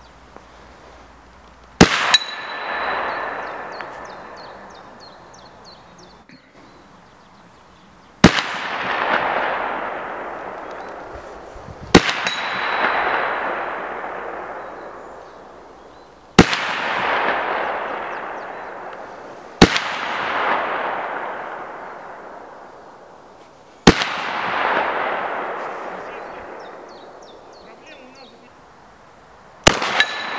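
Seven slug shots from a 12-gauge shotgun, fired singly a few seconds apart, each crack followed by a long echo that fades over three to four seconds. After a few of the shots there is a thin ringing tone, the steel gong target being hit.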